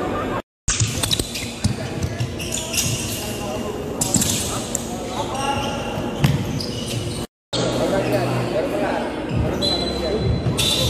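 Basketballs bouncing on a hardwood gym floor in a large echoing hall, with voices of players and coaches. The sound cuts out completely twice, briefly, about half a second in and about seven and a half seconds in.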